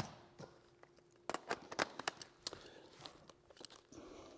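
Scattered faint clicks and small rustles at irregular times, from a DSLR camera being handled between shots.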